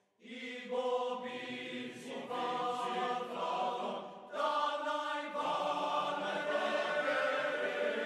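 Choir singing a slow chant in held notes. It starts just after a brief silence and pauses briefly about four seconds in.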